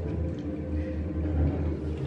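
A steady low hum with a few faint sustained tones above it.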